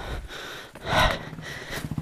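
A short, forceful breath out about a second in, over low background noise.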